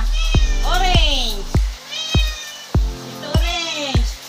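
Cats meowing, two long rising-and-falling meows about a second in and near the end, over background music with a steady thumping beat.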